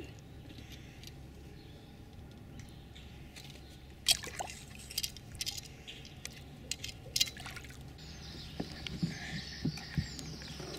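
Water splashing around a hooked snapping turtle as it paddles and claws at the surface beside the boat: a few quiet seconds, then a series of short sharp splashes from about four seconds in.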